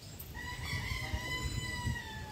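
A rooster crowing: one long, drawn-out call held at a fairly even pitch that sags slightly as it ends.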